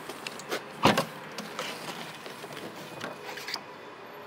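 Boot lid of a Volvo S60 saloon being released and lifted open: one sharp click about a second in, with a few lighter clicks and knocks around it.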